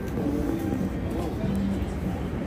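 Low steady rumble with faint voices mixed in.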